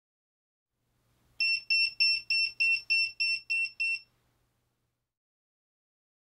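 Yonhan 12/24V smart battery charger's built-in beeper sounding an error alarm: a quick run of about nine short, high-pitched beeps, about three a second, stopping after some two and a half seconds. The alarm goes with its E1 error, the warning for battery clips connected in reverse polarity.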